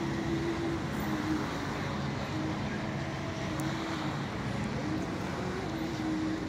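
Steady outdoor background rumble, with faint distant voices and short held tones coming and going.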